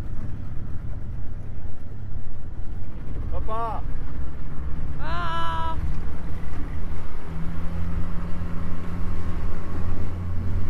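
A small boat's outboard motor running steadily, its hum getting stronger about seven seconds in, with water rushing past the hull. Two short rising shouted calls ring out, about three and a half and five seconds in.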